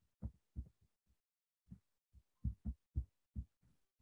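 Faint, short thumps at uneven intervals, about seven of them with a pause of about a second in the middle, from a stylus knocking against a tablet as a handwritten note is written.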